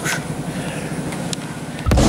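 Steady room noise of a gym with a faint low hum, no voices; loud electronic dance music with a beat cuts in near the end.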